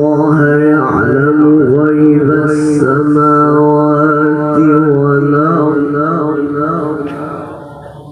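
A male qari reciting the Quran in the melodic tilawah style through a microphone: one long, ornamented phrase with a wavering, melismatic pitch, held and then fading out near the end.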